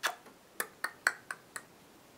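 Plastic lipstick tubes clicking against each other as they are sorted through by hand: about six sharp clicks with a slight ring in the first second and a half.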